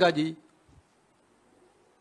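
A man's voice into a microphone, ending a word in the first half-second, followed by a pause of quiet room tone.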